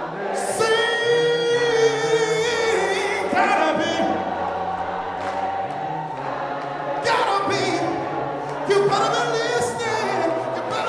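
Choir singing a cappella in harmony, holding long notes, with a new phrase beginning about seven seconds in.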